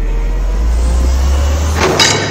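A deep, steady bass rumble under a wash of hiss, a production sound effect in the intro of a Brazilian funk DJ set. It swells slightly and ends in a short whoosh near the end.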